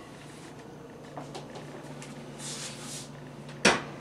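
Faint handling and movement noises as a stainless-steel pan is carried to a gas stove, then a single sharp clunk near the end as it is set down on the burner grate.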